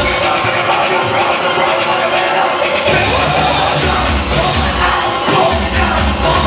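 Loud live electronic noise-rap music through a club PA, dense and harsh across the whole range. The deep bass drops out for about the first three seconds, then comes back in.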